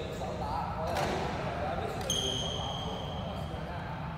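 Sounds of badminton play in a large sports hall: one sharp knock about a second in, then a high, steady squeak lasting over a second, over faint voices and a low, constant hum.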